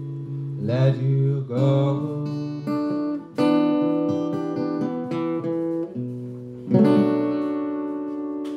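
A man singing over a strummed acoustic guitar. The guitar plays slow chords that ring on between strums.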